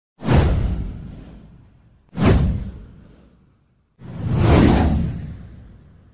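Three whoosh sound effects from an animated title intro. Each is a sudden rush that fades away over a second or two. The third swells in more slowly before fading.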